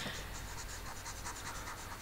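Faint scratching of a stylus tip rubbed back and forth across a tablet screen to erase handwritten digital ink.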